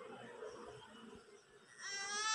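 Faint background sound, then a high, wavering bleat from an animal starts near the end.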